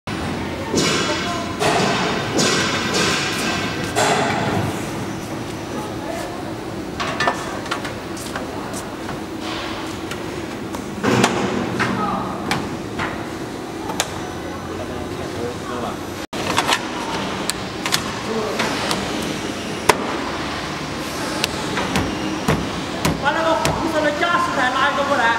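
Knocks and thumps of a curved aluminium corner trim being handled and pressed by hand onto the edge of a pontoon boat deck.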